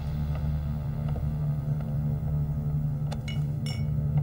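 Low, steady drone of suspenseful soundtrack music, with a few faint high ticks about three seconds in.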